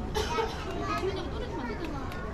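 Untranscribed chatter of several people, with high children's voices prominent among them.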